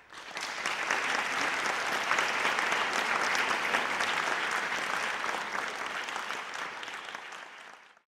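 Audience applauding, starting suddenly and fading away near the end.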